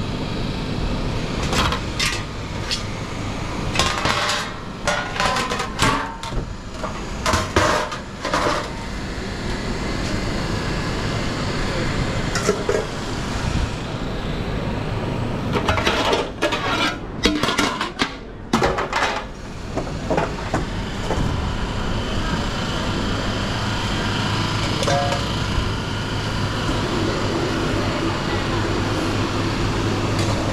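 Commercial kitchen with a steady hum of ventilation and equipment, and metal sheet trays and utensils clattering and knocking on stainless steel counters in two spells, one in the first third and one just past the middle.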